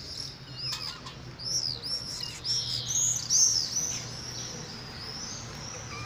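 Small birds chirping, a quick run of short arched high chirps that grows busier and louder about three seconds in, then thins out.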